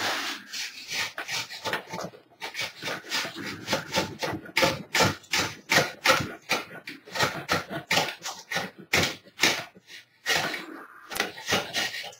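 Putty knife scraping in quick, repeated strokes, about two or three a second, across hardened casting material, with a couple of short breaks. The material has stuck to the mould's outer rim, which was not sprayed with release agent.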